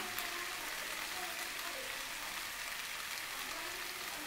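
Steady, soft sizzling of a spice paste frying in mustard oil around pieces of potato and raw banana in a non-stick pan. The masala has cooked down to the point where the oil separates from it.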